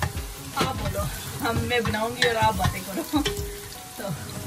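Chopped onions sizzling as they fry in oil in an enamelled pot, stirred with a wooden spatula that scrapes and knocks against the pot again and again.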